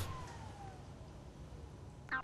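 Blower motor of a Dräger X-plore 7300 powered air purifying respirator spinning down after being switched off: a faint whine falling steadily in pitch and fading out over about a second and a half.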